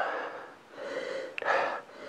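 A person sniffing the aroma of red wine from a glass, breathing in through the nose. There is a soft breath near the start and a sharper sniff about one and a half seconds in.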